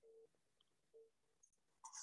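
Near silence, with a few faint short tones at the start and about a second in.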